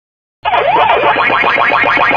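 Electronic arcade-style sound effects: a fast, even run of short bleeps with swooping pitch glides, starting suddenly about half a second in.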